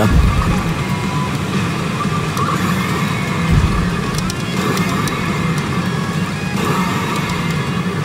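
Loud, steady din of a pachinko parlor: the pachinko machine's music and sound effects over the constant noise of the hall.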